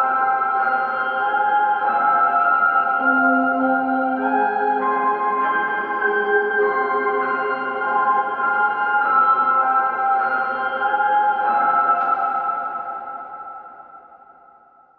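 A reversed, chopped piano sample loop, pitched up and washed in heavy hall reverb, plays back as smeared, sustained piano chords. It fades out over the last two seconds.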